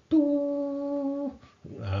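A clarinet playing one steady held note for about a second, pitched a bit lower than 440 Hz.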